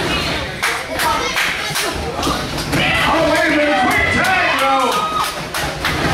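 Repeated thuds and slaps of wrestlers' bodies striking each other and the ring canvas, with voices shouting from the crowd over them in the second half.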